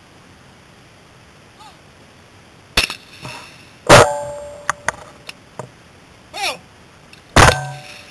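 Shotgun shots at trap: a sharp report about three seconds in, a louder one a second later, and another loud blast near the end from the Browning Silver 12-gauge semi-automatic the camera rides on, with a few light clicks in between.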